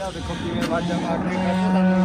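Farm cattle mooing: one long, steady, low call that starts a bit past halfway and is still going at the end.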